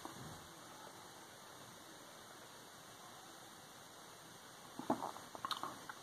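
Near silence: quiet room tone with a faint even hiss, then a few faint small clicks near the end.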